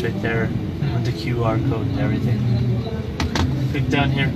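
Indistinct talking over a steady low hum of background hall noise.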